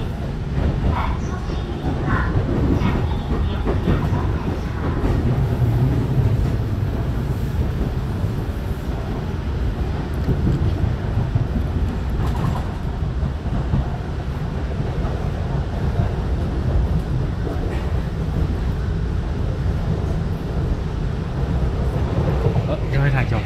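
Steady running rumble of a Taiwan Railway EMU900 electric multiple unit, heard from inside the passenger car while the train is moving.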